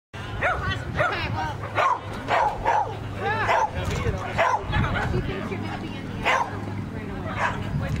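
A dog barking repeatedly, about ten short, sharp barks at uneven intervals, over a steady low hum.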